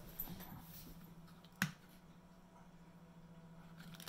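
Quiet room with a steady low hum and a single sharp tap or click about a second and a half in.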